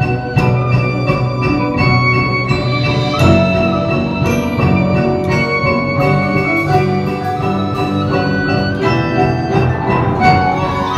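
A percussion ensemble of marimbas and vibraphones plays a passage of many quick struck notes together, with drums and cymbals underneath.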